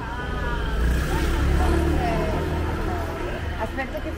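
Motor scooter riding past close by, its engine swelling about a second in and fading over the next couple of seconds, with people talking around it.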